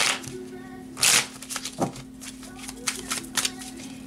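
A deck of playing cards being shuffled by hand: a loud rush of cards about a second in, then quick light clicks and flicks of cards sliding against each other.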